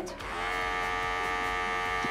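Wahl Chrome Style Pro cordless pet grooming clipper switched on a moment in, then running with a steady, pretty quiet electric buzz.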